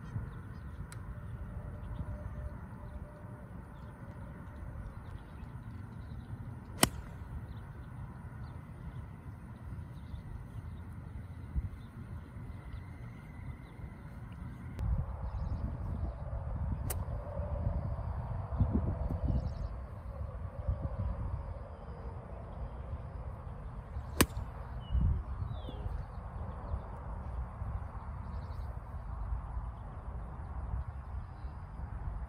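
Golf irons striking the ball: a single sharp click about 7 s in, and another about 24 s in, over a steady low rumble.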